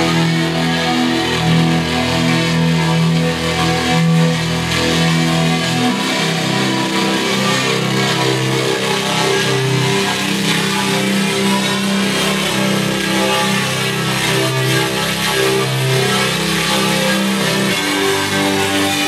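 Live music: electric guitar with electronic, laptop-driven sounds, held notes and chords ringing steadily. About six seconds in, the low notes move to a new chord.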